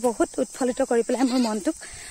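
A woman's voice in quick, repeated sing-song phrases with a wavering pitch, stopping shortly before the end.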